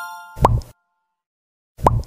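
Two short cartoon 'bloop' pop sound effects about a second and a half apart, each a quick upward-gliding pop, after the last ringing notes of the outro music fade away.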